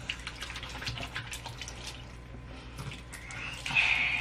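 Bathroom sink faucet running, water splashing over hands being washed in the stream, louder near the end.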